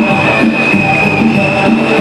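Loud music with a steady rhythm and a long held high note.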